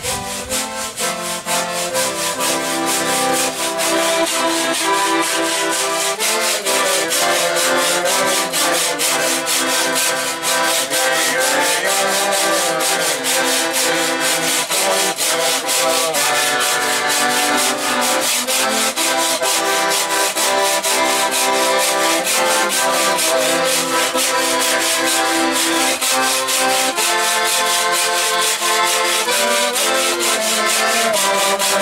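Piano accordion playing a folk tune in chords, with a washboard scraped in a quick, even rhythm over it; the music grows louder over the first few seconds, then holds steady.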